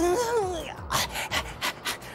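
A dog panting in quick breaths, about six a second, after a short gliding straining voice at the start.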